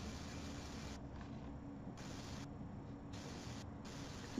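Faint steady hiss of a video-call audio line with no one speaking; the hiss turns brighter and duller by turns every second or so.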